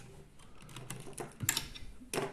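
Wires and plastic corrugated cable sleeve rustling and clicking as a cable is pulled out from a 3D printer's controller board, with a sharper click about one and a half seconds in.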